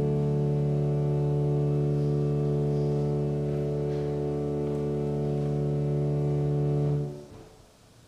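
Organ holding one sustained chord at the close of the prelude. The chord is released about seven seconds in and dies away in a short echo in the church.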